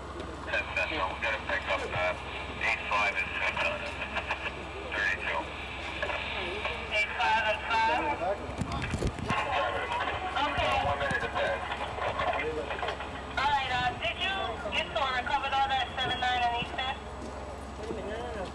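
Indistinct talking from people at the scene, no words clear, with scattered clicks and knocks.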